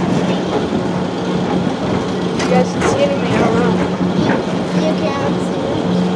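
Steady low hum of the Tomorrowland Transit Authority PeopleMover, the ride train gliding along its track driven by linear induction motors, the hum dipping briefly at regular intervals.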